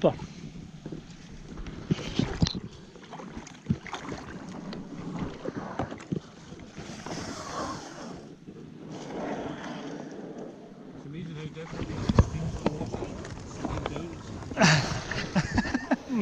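A plastic kayak being launched from a shingle shore into shallow water: scattered knocks and scrapes against the stones, with water lapping and splashing around the hull.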